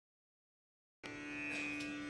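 Silence, then about a second in a steady Carnatic sruti drone comes in, holding the singer's base pitch just before the vocal starts.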